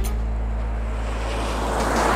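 A car driving by, its engine a steady low hum under road and wind noise that swells louder toward the end as it nears.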